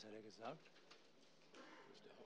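Faint, near-silent hall with one short low murmured voice sound in the first half second, then soft off-microphone murmuring.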